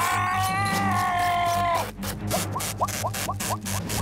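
Cartoon soundtrack: a character's long, slightly falling cry over background music. It breaks off about two seconds in, and a run of about six quick rising squeaky effects follows.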